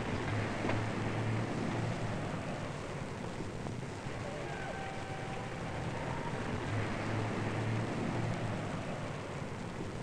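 Steady rumbling industrial background noise with a low machine hum that swells twice, the ambience of a factory plant.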